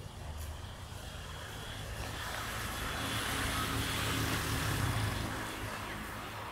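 A road vehicle passing: tyre and engine noise that swells over a few seconds, loudest about four to five seconds in, then eases off, over a steady low traffic hum.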